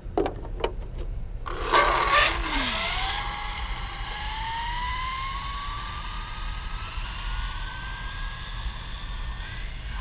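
Two light knocks as an RC car is set down on asphalt. About a second and a half in, the Traxxas 4-Tec 3.0's electric motor and drivetrain launch at full throttle with a loud rush, then a whine that climbs steadily in pitch as the car accelerates away on a speed run.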